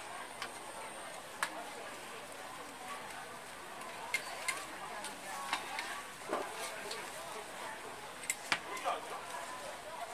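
Metal spatulas clicking and scraping against an oiled flat-top griddle about half a dozen times, at irregular intervals, over a steady hiss of food frying.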